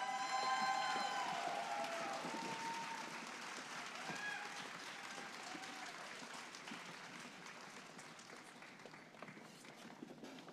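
Audience applause with several whoops and cheers at the start, the clapping slowly dying away. A single whoop rises out of it about four seconds in.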